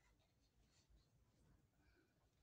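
Near silence, with faint soft swishes of a wide flat paintbrush spreading paint across a canvas.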